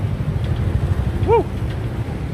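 Low, steady motor-vehicle rumble, with a man's short "woo!" about a second and a half in.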